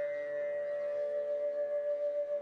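Bansuri (bamboo flute) holding one long, steady note over a soft sustained accompaniment.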